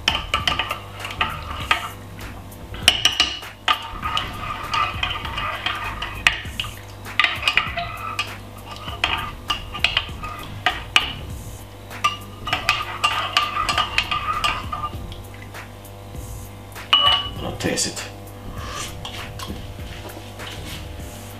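A metal teaspoon stirring hot chocolate in a ceramic mug, clinking repeatedly against the inside of the cup in spells with short pauses.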